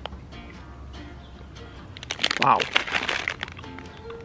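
Soft background music through a quiet pause, then a drawn-out spoken "Wow" a little past the middle.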